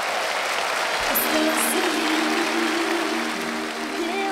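Studio audience applauding; about a second in, music comes in underneath with a few steady held notes.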